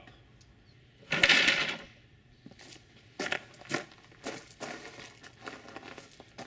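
Rubber-powered slingshot crossbow on a band-driven sled firing a 20 mm steel ball: a sudden loud bang about a second in that dies away within about a second as the sled slams into its buffer block. Then a few footsteps crunching on gravel.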